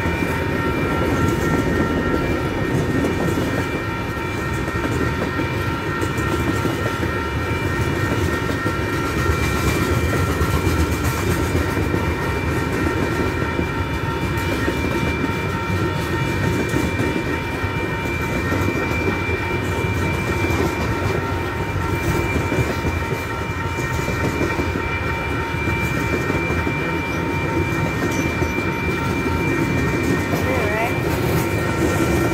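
Freight train of covered hopper cars rolling past close by: a steady rumble and clatter of steel wheels on rail, with a high ringing of several tones held throughout.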